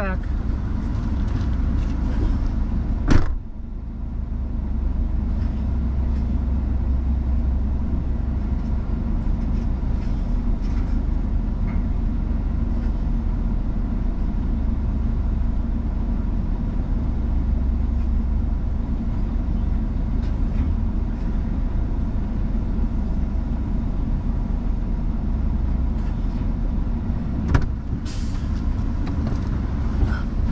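Vehicle engine idling steadily, heard from inside the cab, with a door shutting about three seconds in and a short knock near the end.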